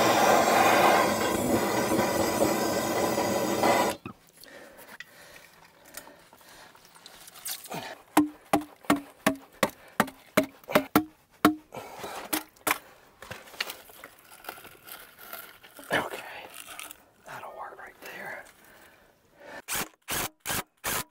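Handheld gas torch burning with a steady hiss while heating the end of a plastic water line, shut off suddenly about four seconds in. After that, a quick run of sharp clicks and scattered knocks as the fitting is worked into the pipe.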